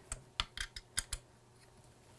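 A quick run of small, sharp clicks, about six in the first second, as a monitor mount is tightened onto the top of a camera cage.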